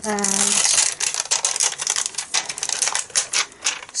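Rapid, irregular crackling and clicking of clear plastic as photopolymer stamps are peeled off their clear carrier sheet and handled inside a clear stamp case.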